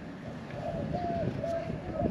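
A dove cooing: three short, even coos about half a second apart.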